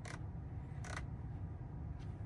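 A single short, faint click about a second in, over a low steady background hum. It is plausibly the Tesla steering-wheel scroll wheel being worked to move through the display's menu.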